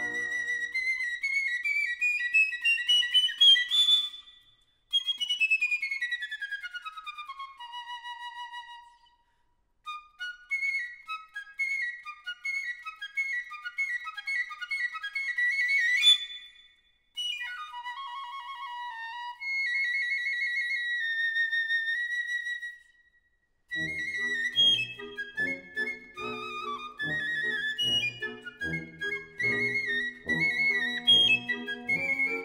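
A period piccolo, a c. 1900 Rudall Carte Boehm-system C piccolo of cocuswood and silver, playing a solo cadenza unaccompanied: a fast rising run, then a falling one, then further runs and held notes broken by short pauses. About three quarters of the way through, a brass band comes in with low notes on a steady beat under the piccolo.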